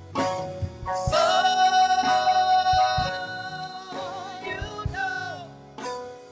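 Live gospel singing with a band: a singer holds one long note with vibrato, over a drum beat.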